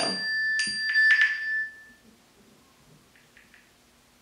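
Drinkware clinking: a few light strikes in the first second or so set up a bright, bell-like ring that dies away at about two seconds, followed by a couple of faint taps.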